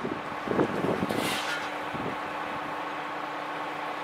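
A vehicle engine idling with a steady hum, with a short high hiss about a second in. Low gusts of wind hit the microphone in the first second and a half.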